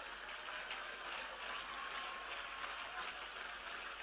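Faint, steady background hiss of a large hall's room tone, with no distinct events.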